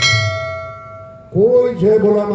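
A single bell-like 'ding' notification sound effect from a subscribe-button animation. It is struck once and rings down over about a second. A voice over the loudspeakers comes back in partway through.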